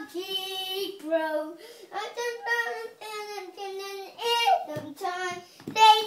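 A five-year-old boy singing unaccompanied, holding notes that step up and down in pitch, with short breaks between phrases.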